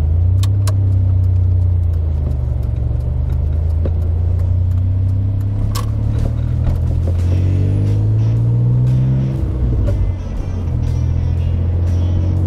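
DeLorean DMC-12's PRV V6 engine heard from inside the cabin while driving: a steady low drone that climbs in pitch as the car accelerates from about seven seconds in, drops away briefly near ten seconds, then settles again.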